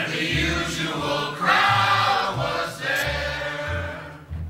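A group of male voices singing a song together in loose unison, over an acoustic guitar and low bass notes that change about every half second.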